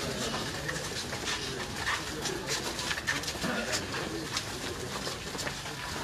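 Outdoor ambience of a group walking down a lane: many short ticks of shuffling footsteps on dirt and grit, with a bird cooing and faint voices.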